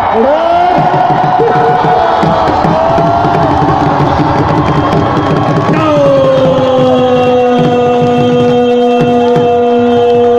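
Loud music with a drum beat, mixed with crowd noise. Over it a long held voice rises in at the start and lasts about three seconds. A second long, steady held voice starts about six seconds in and carries on past the end.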